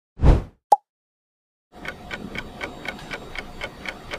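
Sound effects: a low thud, a short sharp pop, then after a pause a clock ticking steadily at about four ticks a second, a quiz countdown timer.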